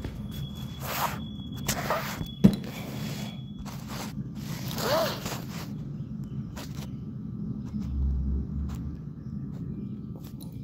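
Squarebody Chevrolet truck's engine idling with a steady low hum, under several short noises about a second apart and a single sharp knock about two and a half seconds in.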